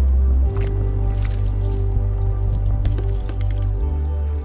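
Background music: sustained low bass notes that change about half a second in and again near the end, with scattered light clicks over them.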